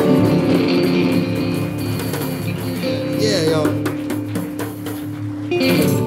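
Live acoustic blues trio playing the closing bars of a hill-country blues tune on electric guitar and acoustic guitar with hand percussion. The band stops together near the end.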